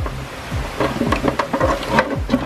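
Background music with a steady beat, about two beats a second, over light clicks and rustling from the pump's power cord being handled against the plastic bowl.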